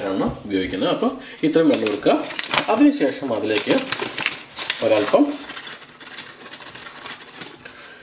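A person talking for about the first five seconds, then a quieter stretch with a few light clicks.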